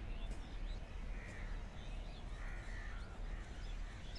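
Birds calling by the track: two harsh calls about a second and two and a half seconds in, with fainter high chirps and a steady low rumble.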